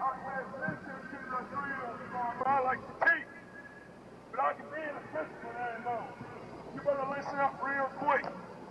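Shouted speech in several bursts with short pauses: exercise commands called out to a formation of recruits during physical training.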